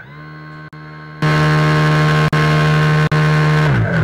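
Airship's onboard propeller motor whirring: it spins up, runs steadily at a loud, even pitch, then winds down with a falling pitch near the end.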